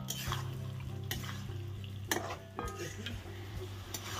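A spatula stirring and scraping thick chicken curry around a kadai, with a soft sizzle of frying. There are a few short, sharper scrapes against the pan, about one a second.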